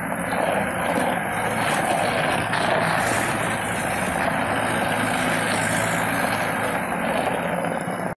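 Gehl 5640 skid steer loader's remanufactured diesel engine running steadily while the machine drives and turns.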